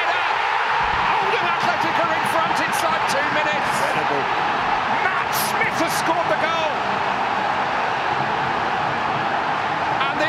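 Football stadium crowd cheering and roaring without a break, many voices together, celebrating a home goal.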